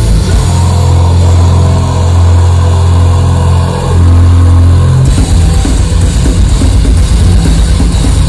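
Live heavy metal band playing very loud: long held low chords from the guitars and bass, then about five seconds in the band breaks into a fast, choppy rhythm with drums.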